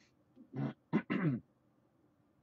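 A man's brief wordless vocal sounds: three short bursts in quick succession starting about half a second in, the last one falling in pitch.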